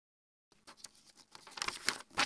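A paper page of a picture book being turned by hand: quiet rustling and sliding that starts about half a second in and grows louder as the page swings over.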